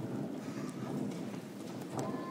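Footsteps on a wooden stage floor: a light, irregular, hollow clatter of several feet moving across the stage.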